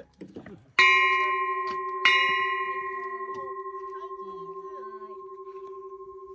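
Small Japanese temple bell (bonshō) struck twice with a wooden mallet, about a second in and again a little over a second later. Each strike rings on in a long, slowly fading tone that pulses in level as it dies away.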